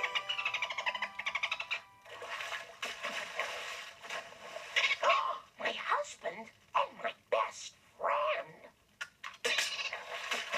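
A cartoon dolphin's fast squeaking chatter, followed by music and vocal-like sounds, played from a television speaker.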